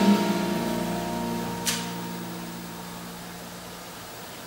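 A jazz band's held chord rings on after the vocal line and slowly fades away. A short sharp click comes a little under halfway through.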